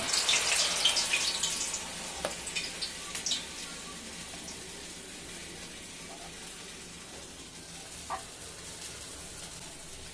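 Urad dal vadas (bara) sizzling in hot oil in a kadai, just after being dropped in. The sizzle is loudest in the first couple of seconds, then settles to a steady, quieter bubbling with a few faint clicks.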